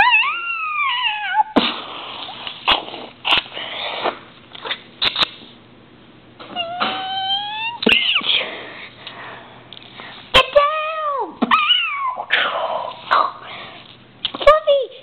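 A person's voice making several drawn-out, meow-like cries that glide up and down in pitch, voicing Lego kitty-cat figures. Between the cries come sharp clicks as small plastic Lego pieces are handled on a hard floor.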